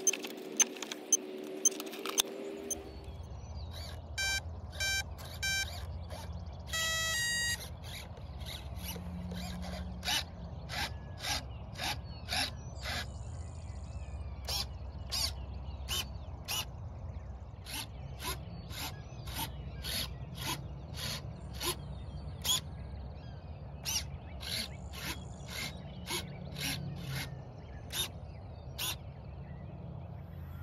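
An electric RC airplane's speed controller beeping as its LiPo battery is connected: three short tones, then a longer tone, signalling the controller has powered up and armed. Plug handling clicks come before the beeps, and irregular short clicks follow, about one or two a second, over a low steady hum.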